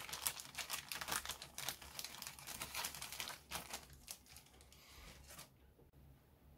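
Thin clear plastic bag crinkling and crackling as a clear plastic parts sprue is slid back into it by hand, a busy run of small irregular crackles that dies away near the end.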